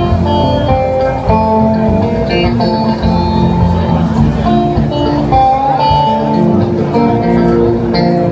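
Amplified electric guitar playing a song's instrumental intro, picked notes ringing and changing pitch one after another over a steady low end.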